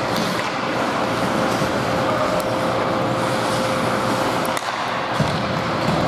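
Ice hockey rink ambience during play: a steady din with a faint steady hum running under it, and a few scattered sharp clicks of sticks and puck on the ice.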